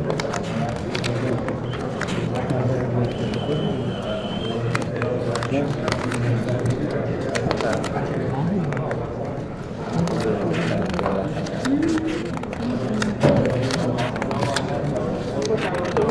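Background murmur of many people talking at once in a large hall, with the crackle of paper ballots being unfolded and handled.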